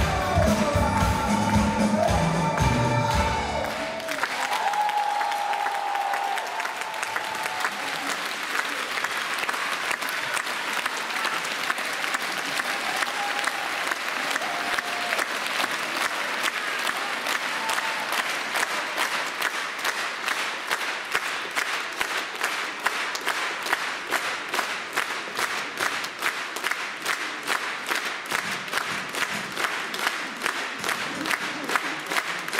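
A song with a large ensemble ends on the singer's high held note about four seconds in. A large audience then applauds, and the applause turns into steady rhythmic clapping in unison, about two claps a second.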